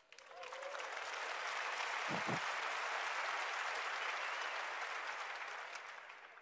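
Large audience applauding, building up quickly just after the start, holding steady, and fading out near the end.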